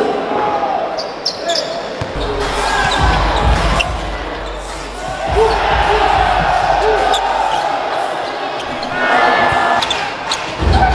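Basketball game sound on a hardwood court: a ball being dribbled and players' sneakers squeaking, over the steady noise of an arena crowd, with heavy low thumps through the middle seconds.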